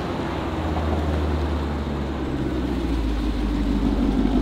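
Car engine running at low speed: a steady low hum with an even haze of outdoor noise.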